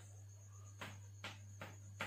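Chalk writing on a chalkboard: four short, faint taps and scratches of the chalk in the second half, about 0.4 s apart, as letters are formed. A steady high-pitched pulsing tone and a low hum run underneath.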